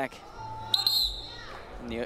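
A short, shrill referee's whistle blast about three quarters of a second in, over the noise of the arena hall. It marks the end of the wrestling period.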